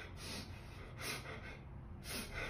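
A young man's faint gasping breaths, twice, as he begins to cry after a fright.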